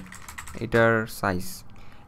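A short run of keystrokes on a computer keyboard, typing a word. About a second in, a held voiced 'mmm'-like hesitation sound lies over the keystrokes and is the loudest sound.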